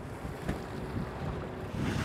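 Wind buffeting the microphone, with an uneven low rumble and a faint steady hum through the middle.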